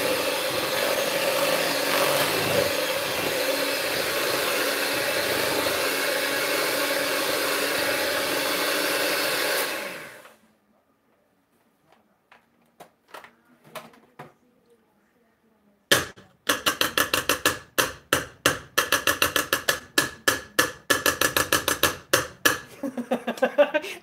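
Electric hand mixer running steadily while beating cream cheese in a stainless steel bowl, switched off about ten seconds in. After a short quiet pause, a rapid run of metallic clicks as the detached beaters are scraped clean with a spoon.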